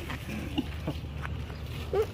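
A few short animal calls, brief squeaks about half a second in, near one second and again at the end, over a low steady hum.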